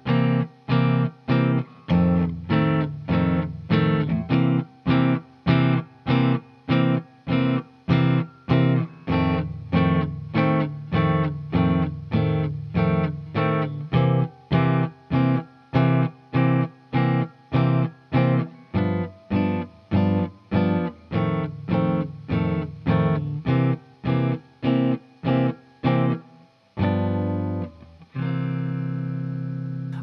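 Semi-hollow electric guitar comping a swinging 12-bar blues in C: short, damped C7, F7 and G7 chords struck on every beat, about two a second. Near the end a last chord is left to ring.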